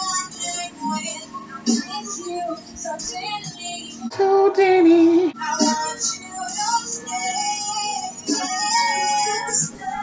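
A song playing: a sung vocal melody over music, with a short louder passage about four seconds in.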